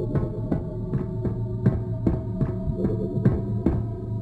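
A steady low electronic hum with a regular thudding pulse of about three or four beats a second running through it.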